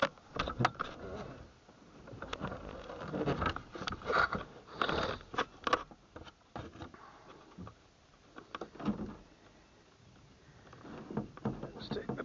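Close handling noise: irregular clicks, knocks and rustling as the camera mounted on the velomobile's fairing is moved and re-aimed, with quieter gaps in between.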